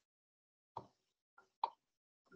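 Near silence broken by two short soft knocks, a little under a second apart.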